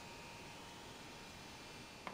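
Faint steady hiss of room tone with a thin, steady high-pitched tone through it; no distinct event.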